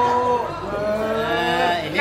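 A person's voice drawn out on two long, held vowels, the second sagging in pitch near the end.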